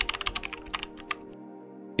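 Keyboard-typing sound effect: a quick run of clicks that stops a little over a second in, over a steady music drone that continues.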